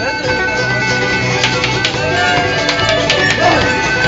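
Live band playing an instrumental stretch of a country song: strummed guitars holding chords, with sharp strokes scattered through it.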